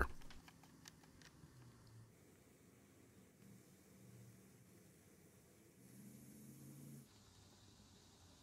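Near silence, with a few faint clicks in the first second or so from a screwdriver working the screws of the trimmer's plastic rear cover.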